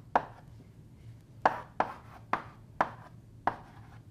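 Chalk tapping and knocking on a blackboard as an equation is written: about six sharp taps at uneven intervals.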